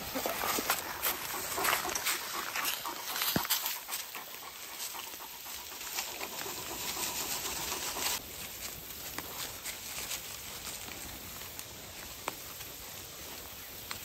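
Goats browsing in grass and brush, with rustling, soft crackles and twig snaps as they tear at the vegetation. A dog moves close to the microphone near the start.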